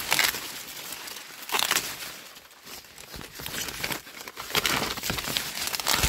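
Maize leaves and husks rustling and crinkling as a hand pushes through the stalks to pick green corn ears, with several brief louder crackles.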